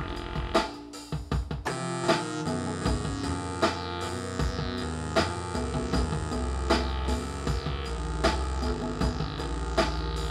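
Roland MC-303 groovebox playing a steady drum beat, with layered synthesizer notes played on it from a MIDI keyboard. The music thins out about a second in and comes back fuller a moment later.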